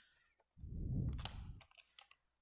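Clear plastic blister pack of paint tubes being opened and handled: a sharp click, then about a second of plastic rustling and scraping, and a few light clicks near the end.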